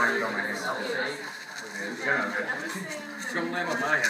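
People talking indistinctly, with no words made out.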